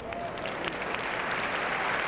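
Arena audience applauding, the clapping swelling louder through the first second and then holding steady.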